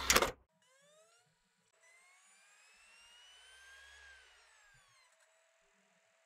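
CD player disc-loading sound effect: a brief noisy rattle of the tray mechanism at the very start, then the disc motor spinning up with a short rising whine and a longer one that climbs for about two seconds and falls away. A faint steady hum follows as the disc settles at speed before playback.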